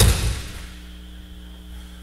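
An aikido partner falling backwards onto the dojo mat in a breakfall, thrown from a kneeling position: one heavy thud that dies away within about half a second, over a steady electrical hum.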